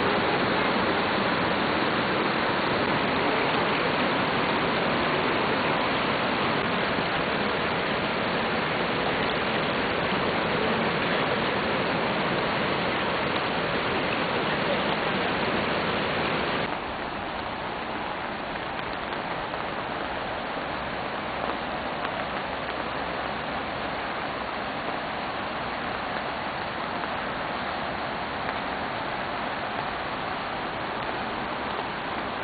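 Steady rush of a rain-swollen torrent of water pouring down a landslide slope. About halfway through it cuts off suddenly to a quieter, steady wash of outdoor noise.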